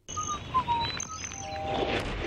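Songbirds chirping in short whistled calls, a few dropping in pitch. Near the end a rushing noise swells in over them.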